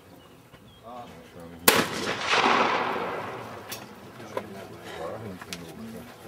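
A single loud trap shotgun shot about two seconds in, breaking the clay target. It is followed by a broad rush of noise that fades out over about two seconds, and a few faint distant cracks later on.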